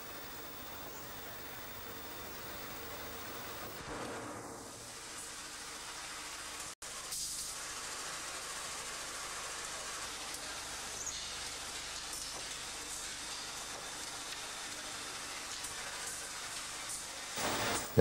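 Steady hiss and hum of a forge shop at work: a gas-fired furnace and a rolling mill running as red-hot sheep-shear blanks are rolled to length and thickness. The noise cuts out for an instant about seven seconds in.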